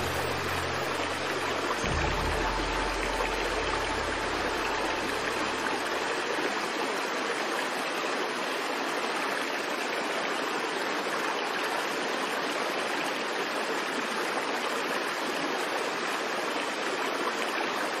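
Steady rush of flowing water, like a stream over rapids, with the last low sustained music notes fading out in the first few seconds.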